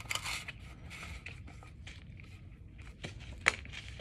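Gloved hands handling a sheet-metal siren bracket with a bolt set in it: faint scraping and rustling, with a sharp click about three and a half seconds in.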